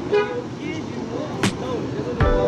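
A short car horn toot over street traffic noise and background voices, with a sharp click about a second and a half in.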